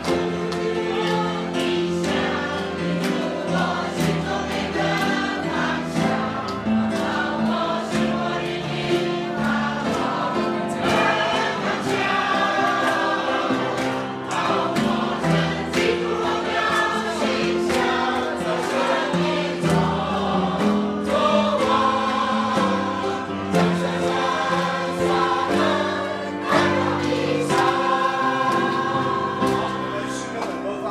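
A congregation of many men and women singing a hymn together in a large room, with a steady beat of sharp strokes running through the singing.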